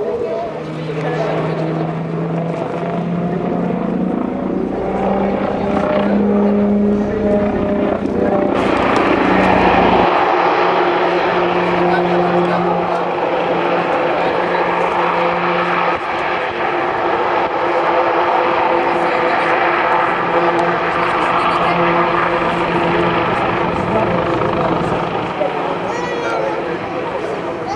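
Eurocopter X3 compound helicopter in flight: its main rotor and two side-mounted propellers make a loud, steady drone with whining tones that shift in pitch. The sound grows louder and fuller about eight and a half seconds in.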